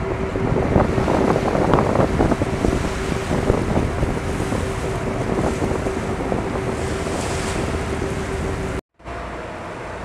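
Wind buffeting the microphone over open sea, with the wash of waves and a steady hum underneath. The sound cuts out suddenly near the end and comes back quieter.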